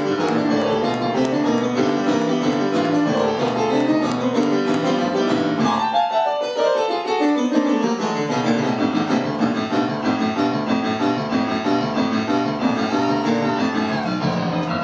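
Live amplified stage piano played fast and loud in dense chords, with a run sweeping down the keyboard about six seconds in before the chords pick up again.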